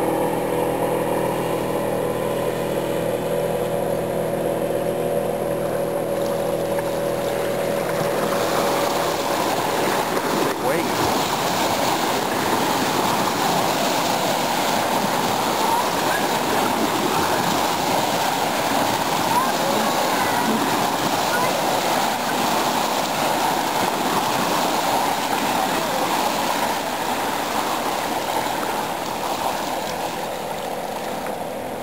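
Small waves washing and splashing steadily onto a stony shore. For the first few seconds a steady engine hum sounds underneath and fades out.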